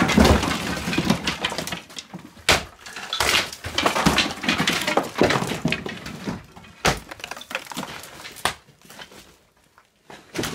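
Lath and plaster being torn off an old wall: crumbling plaster falling and scattering, with cracks and knocks of the wooden lath. It comes in two loud stretches in the first half, then single knocks, and grows quieter near the end.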